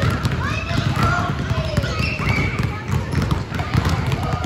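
Many basketballs being dribbled at once on a hardwood gym floor, a dense, uneven patter of overlapping bounces with no single beat. High children's voices call out over it.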